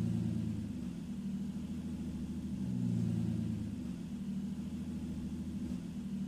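Car engine running at idle with a low exhaust note, swelling twice, about three seconds apart.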